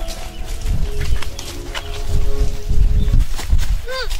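Footsteps of several people on a leaf-covered dirt path: irregular low thuds with light crunches, heaviest in the second half. Right at the end a brief muffled cry starts as a hand is clamped over a mouth.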